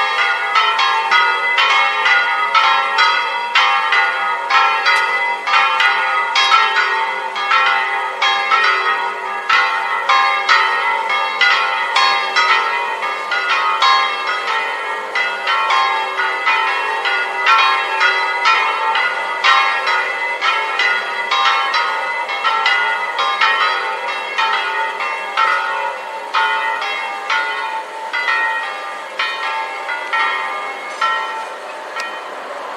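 Three church bells swung full-circle by electric motors (Italian 'a slancio' style), tuned G3 (slightly sharp), A3 and B-flat3, ringing together in a festive peal. Their strokes overlap several times a second in a continuous ringing that grows somewhat softer toward the end.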